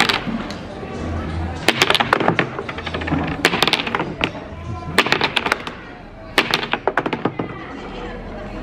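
A small ball clattering down a wooden rolling-ball game board in four short bursts of rapid knocks and taps, over background music.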